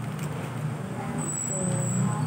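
Road traffic: a motor vehicle engine giving a low, steady rumble, with a thin high whistle in the second half.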